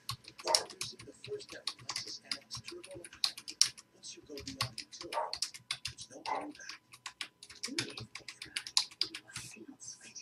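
Computer keyboard being typed on: rapid, irregular keystroke clicks as a short list of words is entered.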